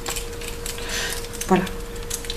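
Small objects handled by hand: a few light clicks and a short rustle, over a faint steady hum.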